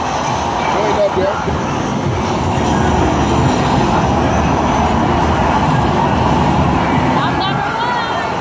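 Off-road racing arcade cabinet playing loud engine and driving sounds through its speakers, over the din of a busy arcade with voices in the background.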